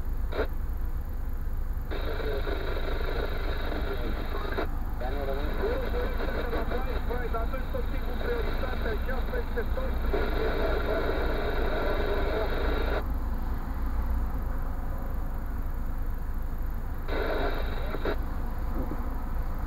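Car engine idling, a steady low rumble inside the cabin, with indistinct voices talking over it for much of the time.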